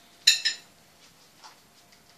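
Metal kitchen tongs clinking against a metal oven tray: two quick metallic clinks with a short ring, then a faint tick about a second and a half in.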